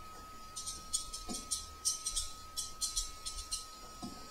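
Light, irregular high-pitched clicking and rattling in quick clusters, from about half a second in until shortly before the end. A faint steady high whine runs underneath.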